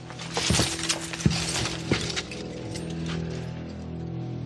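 Metallic clanking and rattling, with several sharp clinks in the first two seconds, over a low sustained music drone.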